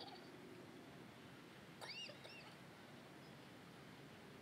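Near silence: faint steady background hiss, broken about two seconds in by a brief high, arching chirp.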